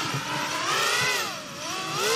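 FPV kamikaze quadcopter in flight, its electric motors whining with a hiss, the pitch climbing, dipping and climbing again as the throttle changes.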